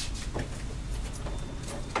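A few faint taps and clicks as the Astra's indicator bulb holder and connector are tapped and handled, a check on whether a poor connection rather than the bulb is the fault.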